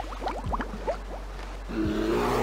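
Seaside intro sound effects: a steady hiss like surf with a string of quick rising whistle-like chirps in the first second. A low, steady ship's horn blast starts near the end.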